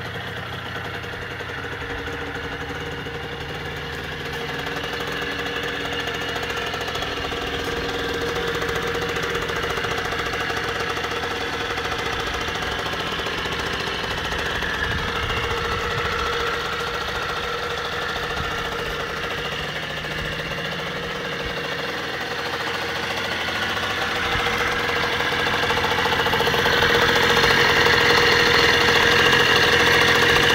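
1996 Derbi Senda R SM50's 50cc two-stroke single-cylinder engine idling steadily, getting louder near the end as the engine is heard close up.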